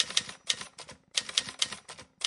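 Typewriter typing sound effect: rapid key clacks in short runs, a few strikes per run, about three runs a second, as the text types onto the screen.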